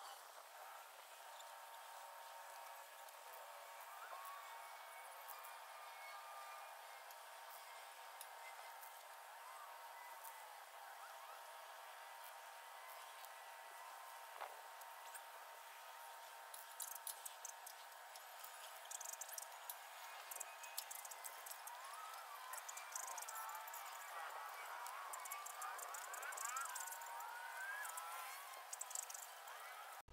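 Faint outdoor sound with chirping glides, and from about halfway on many short hissing bursts, as of an aerosol spray-paint can being sprayed in quick passes.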